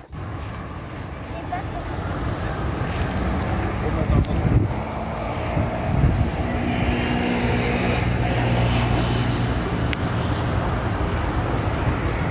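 Steady low rumble and hiss of outdoor background noise, swelling slightly in the middle, with a single faint click near the end.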